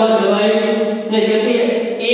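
Voices in a drawn-out, chant-like recitation, with held pitches and a short break about a second in.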